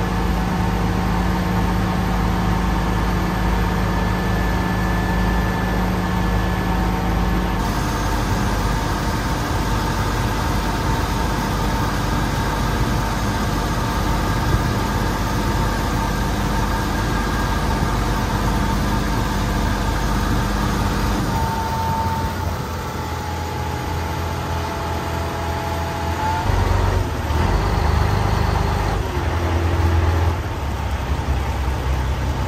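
Engine of a Chao Phraya express boat running steadily under way, with water rushing along the hull. Its note shifts about a quarter of the way in, eases off about two-thirds in, and picks up again near the end as the boat comes in to the pier.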